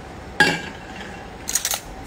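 Kitchen clatter of utensils and containers being handled: a sharp clink with a short ring about half a second in, then a quick cluster of clicks and clinks near the end.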